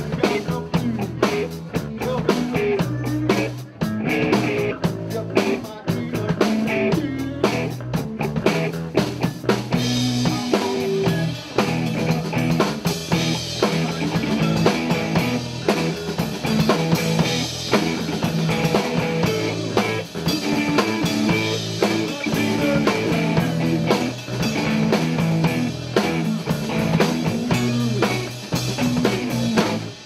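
Live rock band playing: electric guitar and electric bass over a drum kit with steady beats. The cymbals and guitar get brighter about a third of the way through, and the song stops right at the end.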